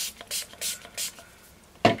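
Pump-action fine-mist bottle of Distress Oxide spray ink sprayed onto card stock in four quick hisses, about three a second, followed near the end by a single sharp knock as the bottle is set down.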